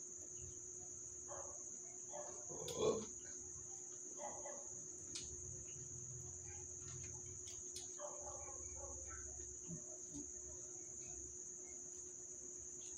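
Steady, high-pitched chirring of crickets, with a brief louder sound about three seconds in and a faint steady hum underneath.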